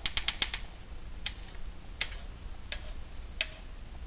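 Side cutters snipping around the tin lid of an old metal fuel can. A quick run of sharp clicks comes at first, then single snips every second or less. The going is a little tough.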